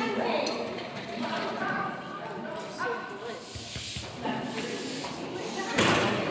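A small dog barking during an agility run, mixed with a handler's called-out cues, echoing in a large indoor hall. A sharp, loud sound comes just before the end.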